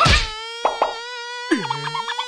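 Cartoon mosquito's wing buzz, a steady high-pitched drone. It opens with a short thump, has two quick clicks about two-thirds of a second in, and ends with a falling tone with rapid clicking.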